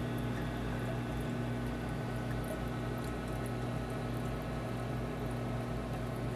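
Red Sea Max 250 reef aquarium's pumps and water circulation running: a steady low hum with water trickling and bubbling.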